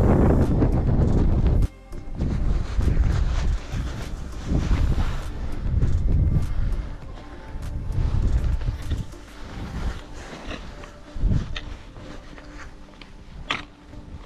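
Wind buffeting the microphone, cut off abruptly just under two seconds in. After that, background music plays under irregular crunching steps and gusts on a scree trail.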